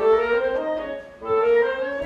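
Woodwind trio of flute, clarinet and bassoon playing classical chamber music: held, overlapping notes moving step by step, with a brief dip in loudness just past the middle.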